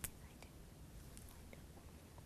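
Near silence: room tone, with one short click right at the start.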